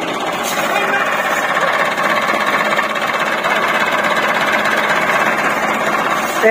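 Tractor's diesel engine running steadily.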